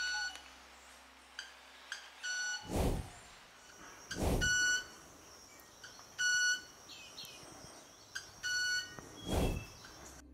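Male club-winged manakin making its wing sound: a couple of short ticks, then a clear, metallic ringing note, repeated about five times. The ridged wing feathers are rubbed together (stridulation) in courtship display. A few short low thumps come between the notes.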